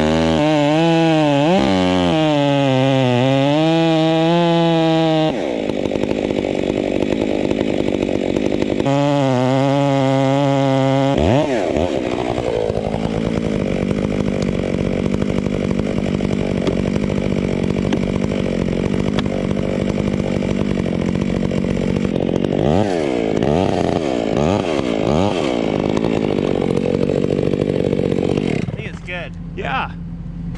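Chainsaw running at full throttle, cutting a Humboldt felling notch into a large fir trunk. The engine pitch dips and rises as the chain bites into the wood, with short rises and falls in speed.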